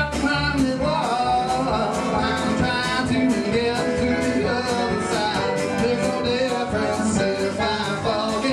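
Live country-folk band playing a song with a steady drum beat: resonator guitar, banjo, upright bass and drum kit, with a lead vocal.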